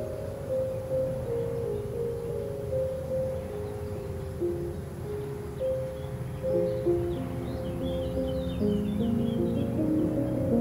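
Soft classical piano melody, muffled as if playing in another room, over a steady low rumble of room and street ambience. Small bird chirps come in during the second half.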